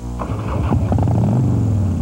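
Harley-Davidson 1340 cc V-twin motorcycle engine, cutting in suddenly and running with a low, shifting pitch.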